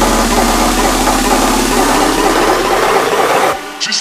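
Big-room electronic dance music build-up: a loud, dense distorted noise wash with a rising sweep, which cuts out suddenly about three and a half seconds in, leaving a few sparse hits at the break before the drop.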